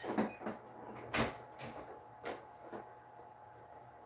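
About half a dozen short knocks and clicks, the loudest a little over a second in, then quiet.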